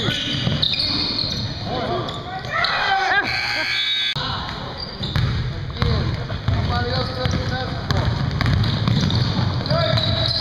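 Basketball bouncing on a hardwood court during a full-court game, amid indistinct players' voices.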